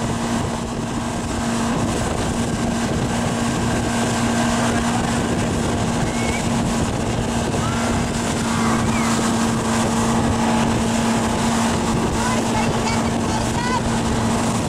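Towing motorboat's engine running steadily under way, a constant hum, over the noise of rushing wake water and wind.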